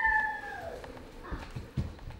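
A high-pitched, drawn-out squeal from a person's voice, one held note sliding slowly down and fading out about a second in, followed by a couple of soft low thumps.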